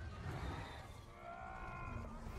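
Action-film soundtrack: a low rumble of sound effects, with several held, steady tones coming in about a second in.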